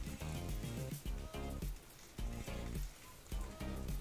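Quiet background music with pitched notes over a low bass.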